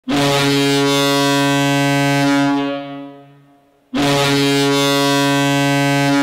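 Toronto Marlies hockey goal horn sounding two long, low blasts, the first dying away after about two and a half seconds and the second starting about four seconds in.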